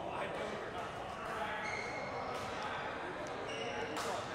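Indoor badminton hall ambience under a rally: a steady background noise of the large hall with a few faint, short squeaks of shoes on the court mat.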